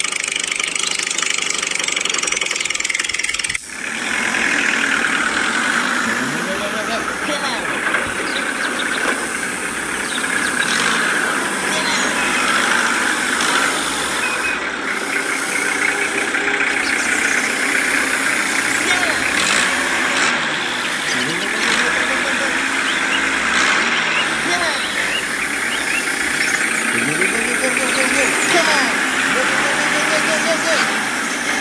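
A miniature model tractor's motor runs steadily as it hauls a loaded trailer. The sound dips sharply for a moment about four seconds in, and short wordless vocal calls keep coming over it.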